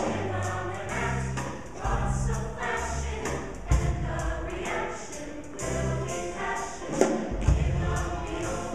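High school show choir singing over its live band, with bass notes and drums keeping a steady beat and a few louder hits near the end.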